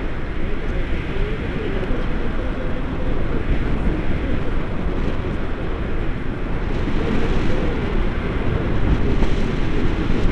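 Airflow buffeting the camera's microphone in flight under a tandem paraglider: a loud, steady rumble of wind noise with a faint wavering tone running through it.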